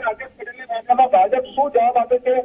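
Speech only: a man talking over a telephone line, the sound thin and narrow.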